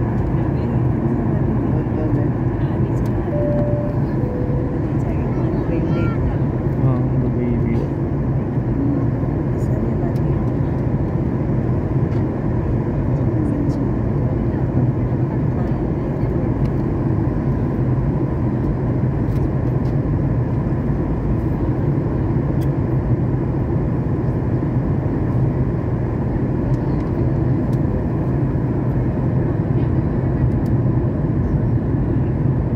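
Steady cabin noise of an airliner in flight: an even roar of engines and rushing air over a low hum, unchanging throughout, with faint voices in the background.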